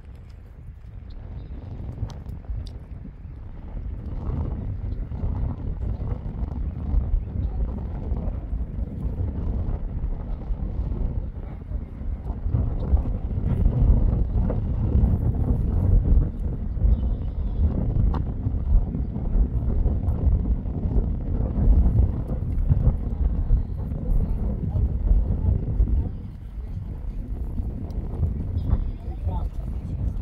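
Wind buffeting the microphone: a low, gusting noise that builds over the first few seconds, is loudest through the middle and drops back near the end.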